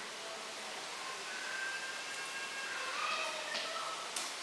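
Chalk drawing on a blackboard, faint under a steady hiss, with a few faint thin squeaky tones in the middle.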